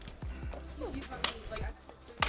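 Music with a low, steady beat. About a second in there is one sharp crack: an ice tool striking frozen waterfall ice.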